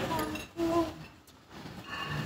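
A man's brief hesitant voice through a microphone, then a pause filled with faint room noise of a hall.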